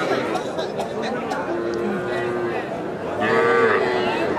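A calf at a cattle market mooing: a short, loud call about three seconds in over the chatter of a crowd.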